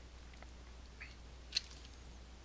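Faint room tone with a steady low hum, a small tick about a second in and one sharp click about a second and a half in, typical of a computer mouse button.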